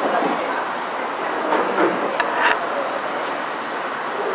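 Busy outdoor café ambience: a steady wash of traffic noise and distant chatter, with a few light clicks and faint high chirps.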